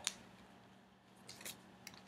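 Faint handling noise of a thin fabric tank top being held up and tossed aside: two short, crisp swishes about a second and a half in, then a light click.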